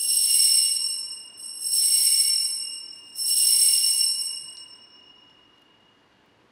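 Altar bell rung three times, about one and a half seconds apart, with a high, bright ring. The last ring fades away over a second or two. The ringing marks the elevation of the chalice at the consecration.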